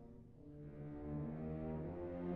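College wind ensemble playing soft, held low chords. One chord dies away at the start, and a new one comes in about half a second in and swells.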